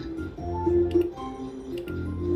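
Novoline video slot machine during free spins: a run of short electronic melody tones changing pitch, with a few sharp ticking clicks as the reels spin and stop.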